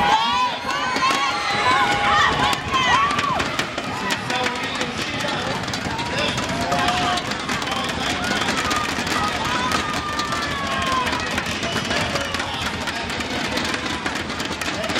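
Indoor arena crowd noise: a steady hubbub with voices shouting and calling out, thickest in the first few seconds, during a wrestling bout.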